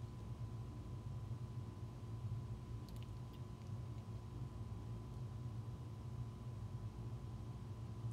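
A steady low hum over quiet room tone, with a couple of faint light clicks about three seconds in.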